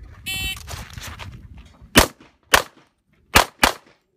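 Electronic shot timer beep, then about a second and a half later four pistol shots fired in two quick pairs at cardboard targets.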